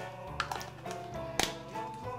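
Background instrumental music with two sharp light taps about a second apart, from a plastic Play-Doh can and its lid being handled.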